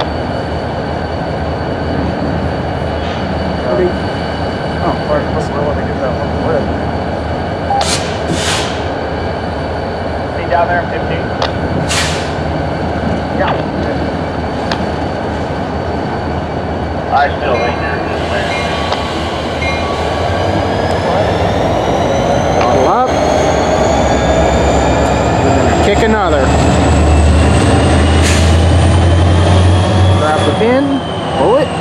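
Diesel switch locomotive running at a steady idle, with a few brief sharp noises around a third of the way in. From a little past halfway the engine throttles up: a rising whine and a deepening rumble build to the end. This is the extra throttle that gets a cut of cars rolling so they can be kicked down the yard track.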